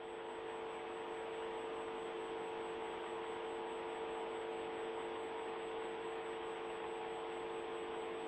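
Steady electrical hum with hiss on the broadcast audio line: one strong steady tone with a few fainter ones above it, unchanging throughout.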